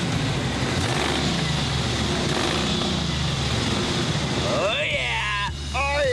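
The engine of a Batmobile Tumbler replica running steadily, a low hum under an even noise that grows a little stronger about a second in. A voice breaks in near the end.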